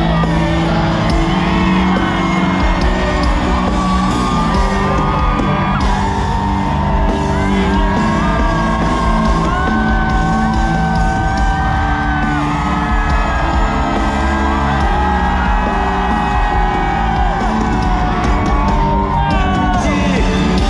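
Loud live concert music: a full band playing and a singer holding long sung notes, with a stadium crowd cheering, whooping and singing along.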